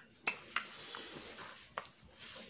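A few faint, sharp clicks with a soft rustle between them, light handling as the clock's power is switched back on.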